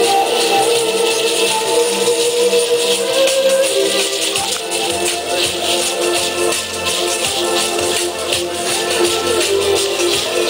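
Live street music: a wooden flute plays a sustained, wavering melody over continuous rapid shaking of rattles. A low bass note joins about halfway through.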